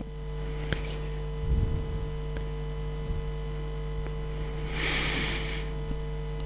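Steady electrical mains hum on the sound system, with a few faint clicks and a short breath noise at the headset microphone about five seconds in.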